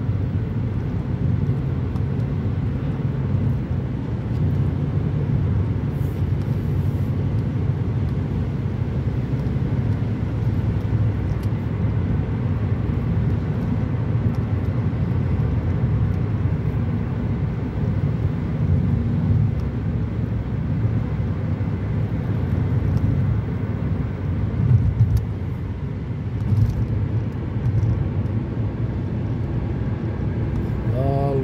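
Steady road noise inside a moving car's cabin: a low, even rumble of tyres on wet pavement and engine hum, with a few slightly louder swells near the end.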